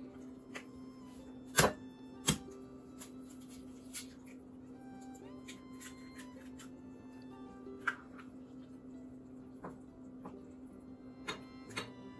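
An egg knocked twice, sharply, against the rim of a small ceramic bowl to crack it, followed by a few fainter clicks and taps, over background music.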